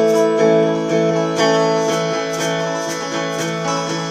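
Electric guitar with a clean tone strumming chords in a steady rhythm, about two strums a second, as the intro to a song.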